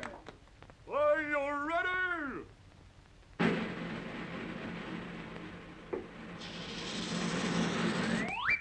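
A cartoon cat's drawn-out meow with a wavering pitch about a second in. From about three and a half seconds a steady rushing noise runs on through the dive into the soup bowl, getting brighter a few seconds later.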